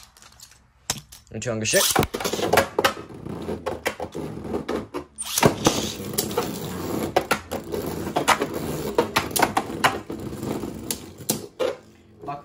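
Two Beyblade Burst spinning tops are launched into a plastic stadium about two seconds in. They then clatter against each other and the stadium wall in rapid, irregular knocks and clicks, with a brief lull midway.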